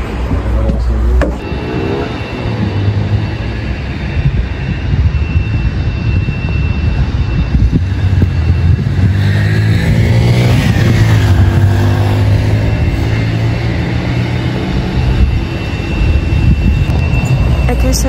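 Road traffic: a motor vehicle's engine passes by, its pitch climbing as it nears, loudest about halfway through, then sliding down as it moves away, over a steady low rumble.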